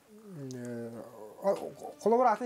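Speech only: a man talking, with one long drawn-out syllable falling in pitch near the start, then shorter words.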